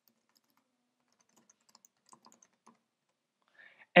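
A short run of faint computer keyboard keystrokes, about eight quick taps starting about one and a half seconds in.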